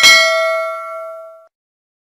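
A single bell ding sound effect, the notification-bell chime of a subscribe-button animation. It strikes once and rings out, fading away over about a second and a half.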